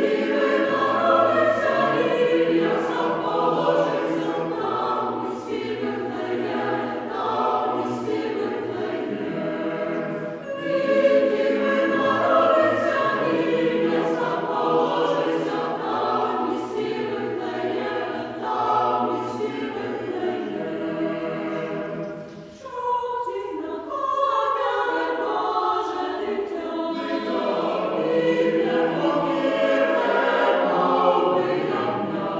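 Church choir singing a Ukrainian Christmas carol (koliadka), many voices together, with a brief break between phrases about three-quarters of the way through.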